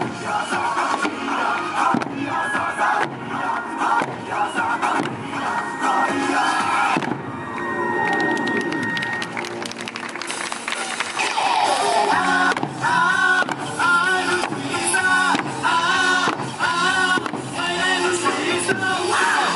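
Eisa drumming: large barrel drums and small paranku hand drums struck together in a steady rhythm over Okinawan music, with shouted calls from the performers.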